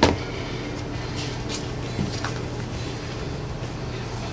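A sheet of drywall being handled and pressed against the wall, giving a few light knocks and scrapes in the first half, over a steady low hum.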